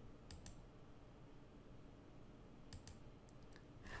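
Near silence, broken by a few faint computer mouse clicks: a pair just after the start and several more in the last second and a half.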